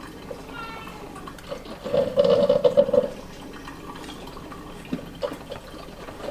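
Liquid poured from a small carton into a cereal bowl, gurgling out of the spout in two louder spells.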